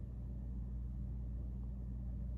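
A steady low hum, with nothing else standing out.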